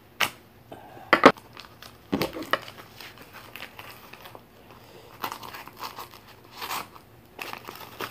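A heavily taped paper envelope being torn and worked open by hand: a few sharp rips in the first couple of seconds, then softer crinkling of paper and tape.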